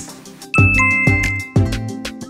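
Edited-in music with a beat, and a bright bell-like chime that strikes about half a second in and rings on for about a second: a transition sound effect.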